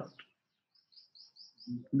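A bird chirping faintly in the background: a quick run of five short, high chirps, each rising in pitch, about a second in.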